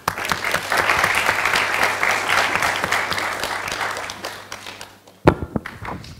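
Audience applauding: the clapping starts abruptly and dies away after about four seconds. Near the end comes one loud knock, followed by a few smaller ones.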